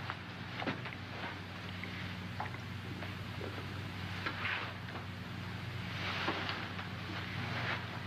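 Steady hiss and low hum of an old optical film soundtrack, with scattered faint clicks and soft rustling as the couple embrace and kiss.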